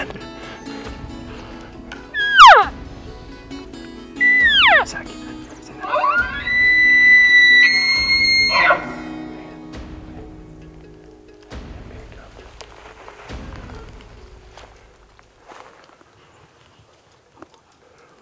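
Elk bugling over background music: two short high whistles falling steeply in pitch, then a longer bugle that rises, holds a high whistle for about two seconds, steps up once and breaks off. The music fades out in the last few seconds.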